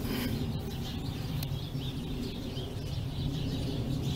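Outdoor background: a steady low rumble with faint bird chirps.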